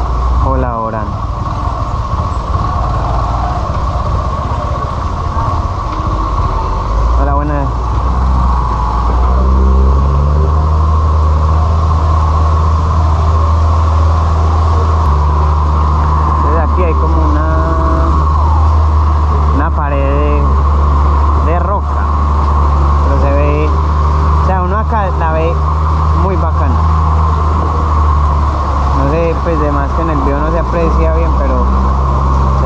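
Yamaha Libero 125's single-cylinder engine running steadily at low speed on a rough road, with the deep rumble of a dump truck's diesel engine just ahead, which grows stronger from about seven to ten seconds in as the motorcycle closes up behind it.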